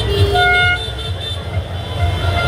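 Celebrating street crowd with a vehicle horn tooting briefly about a third of a second in, over a steady high-pitched tone and repeated low thumps.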